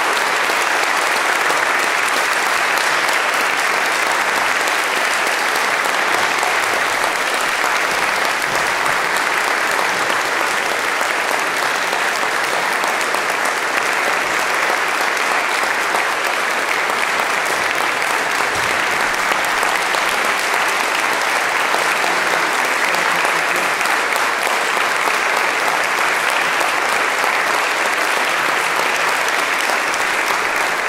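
Audience applauding, a steady, unbroken round of clapping that holds at one level throughout.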